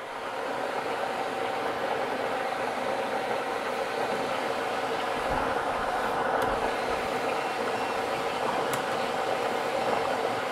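Lottery draw machine running steadily as its clear globe mixes the numbered balls, a constant hum with a steady whine and a few faint clicks of balls in the second half.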